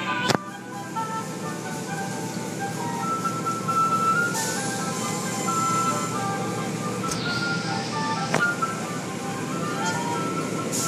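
Music with a simple melody plays over the running of an automatic car wash, heard from inside the car: a steady rumble and wash of water, with bursts of spray hiss about four and seven seconds in. There is a sharp knock just after the start and another near the end.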